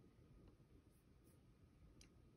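Near silence: faint room tone, with two very faint high ticks about a second in.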